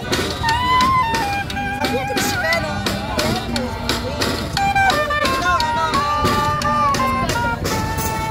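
Live street band of clarinet, accordion, guitar and snare drum playing a tune, the melody held over frequent snare drum beats.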